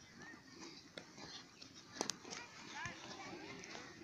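Faint, distant children's voices calling and shouting, with a sharp knock about two seconds in and a few lighter knocks.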